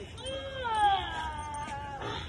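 A small dog's long, high whine, starting just after the start, loudest just before the one-second mark and sinking slowly in pitch.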